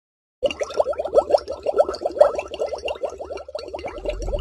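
Cartoon bubble sound effect: a quick string of short rising bloops, several a second, starting about half a second in.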